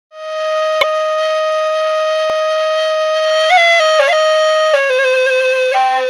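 Background music: a single flute-like wind instrument holds one long steady note, then plays a few quick ornamental turns about three and a half seconds in and steps down to a lower held note.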